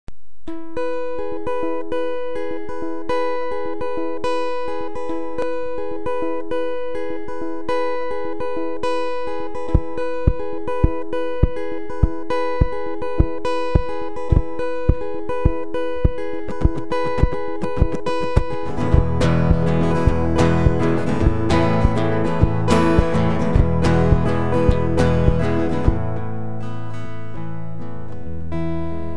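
Acoustic guitar playing an instrumental intro: a repeating picked figure with notes left ringing. About ten seconds in, a steady low thump joins at roughly three beats a second. Near nineteen seconds the playing turns fuller and louder, with deep bass notes underneath.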